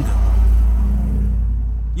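A loud low rumble in a pause between words, swelling about half a second in and easing off, over a steady low hum.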